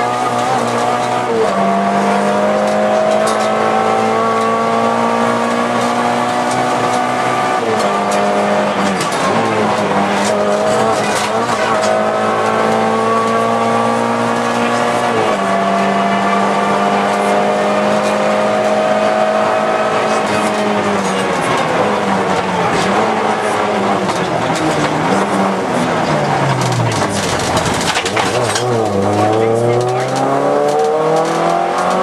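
Volkswagen Golf II GTI 16V rally car's 16-valve four-cylinder engine heard from inside the cabin, held at high revs along a straight with quick gear changes. Over the last third the revs fall steadily as the car slows, then climb again as it accelerates in the final two seconds.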